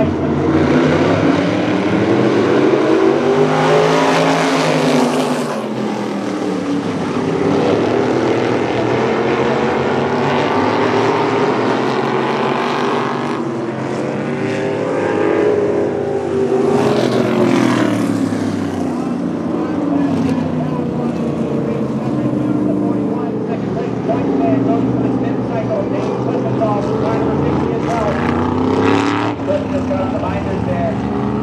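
Winged sprint-style race cars' engines racing past on a paved oval. A pack comes by twice, at about 4 seconds and again at about 17 seconds, the engine pitch rising and falling as they pass, with cars heard more thinly in between.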